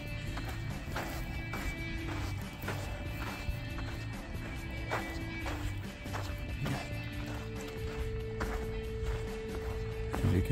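Footsteps on sand and gravel, a step a little under every second, over soft background music with long held notes.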